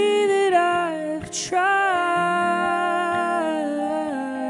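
Live indie-folk music: a wordless sung melody sliding between long held notes over a sustained Hohner Pianet electric-piano and electric-guitar chord with delay and reverb effects. A short breath-like hiss comes about a second and a half in.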